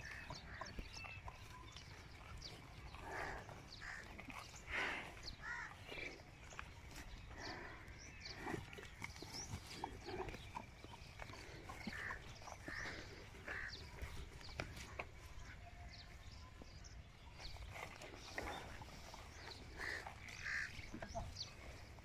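Faint animal sounds: short chirping calls repeating every second or so, with scattered clicks and a steady low rumble of wind on the microphone.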